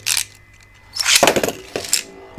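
Beyblade Burst ripcord launcher being pulled to launch a spinning top into a plastic stadium: a short clack at the start, then a rough ripping zip lasting about a second.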